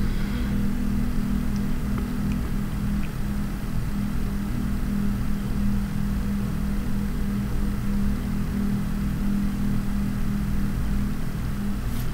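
A steady low hum over an even hiss, unchanging throughout.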